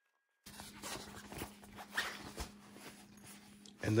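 Hands handling t-shirts and a nylon compression packing cube: rustling and soft knocks of fabric being folded, laid in and the cube closed, over a steady low hum. It starts abruptly after a brief silence.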